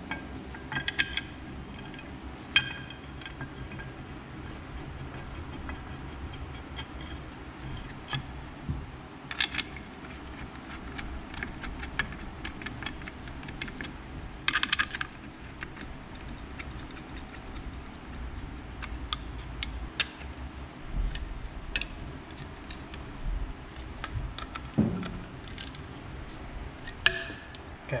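Metal-on-metal clinks and rattles as a steel power steering pump mounting bracket is handled and fitted onto the pump case: scattered light clicks, with short louder bursts of clinking about a second in, near the middle and near the end.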